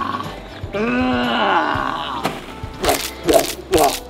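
A man's drawn-out voiced sound, rising then falling in pitch, followed by laughter in three short bursts near the end, over background music.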